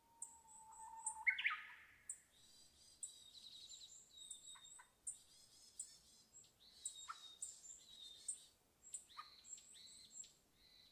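Several wild birds chirping and calling, with short high chirps and trills throughout. Near the start comes one louder call: a held whistle that jumps up sharply in pitch.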